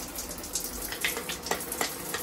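Running water splashing over and through a plastic lotion bottle pump as it is rinsed to flush out leftover lotion, with a few short sharp splashes about a second in and near the end.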